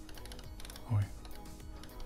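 Tado Smart Radiator Thermostat v3 being turned by hand to raise its temperature setting, giving a quick, irregular run of small clicks as the dial steps round.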